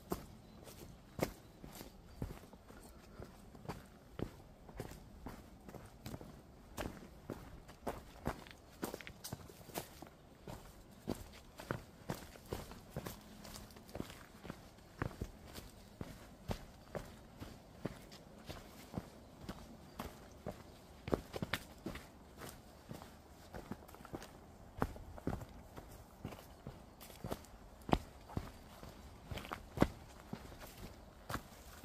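Hiker's footsteps walking steadily down a mountain trail, sharp steps about twice a second.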